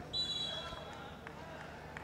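Referee's whistle blown once, a steady high tone lasting about a second, over low hall background noise.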